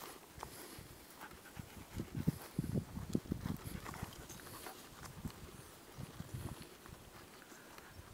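Footsteps through heather, with irregular low thumps and rustling as the hand-held camera bumps along on the walk.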